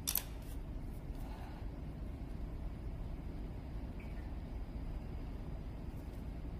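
Steady low hum of room tone, with one short sharp click at the very start.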